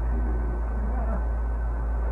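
A steady low hum, with faint murmured speech briefly near the start and again about a second in.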